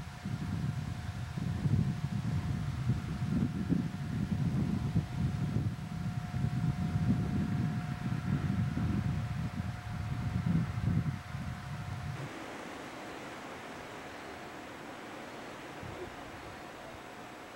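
Wind buffeting the microphone: a low, gusting rumble that rises and falls, under a faint steady tone. About twelve seconds in it cuts abruptly to a quieter, even hiss.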